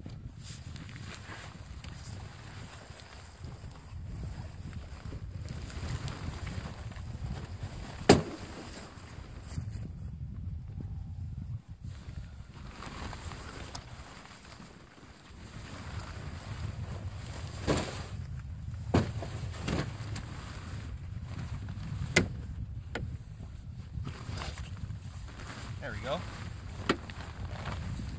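Wind rumbling on the microphone while an ice-fishing shanty's fabric and frame are handled, with several sharp knocks as the shelter is pulled up from its sled base. The loudest knock comes about eight seconds in.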